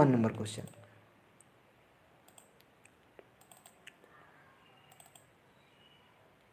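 The tail of a man's voice in the first second, then a few faint, scattered clicks with no steady rhythm.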